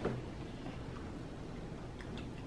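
Quiet room tone: a steady low background hum with no distinct sound in it, apart from a faint click at the very start.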